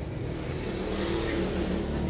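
An engine running with a steady low hum.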